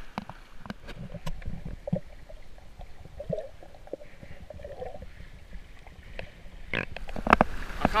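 Sea water sloshing and knocking against a waterproof action camera's housing as it is held just under the surface of shallow water, with a muffled underwater rumble. The knocks and splashing grow louder near the end as the camera comes up out of the water.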